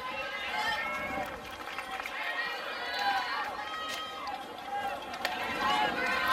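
Ballpark crowd ambience: many voices from the stands and the field calling and chattering at once, none of them close or clear.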